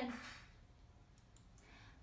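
A woman's word trailing off, then quiet room tone with a few short, faint clicks a little past a second in.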